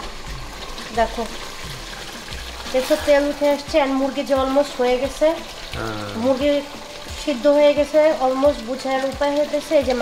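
Chicken curry sizzling in a pot while it is stirred and scraped with a silicone spatula, the meat being braised in its own juices and spices (the koshano stage). From about three seconds in, a melody of held notes, background music, rides louder over it.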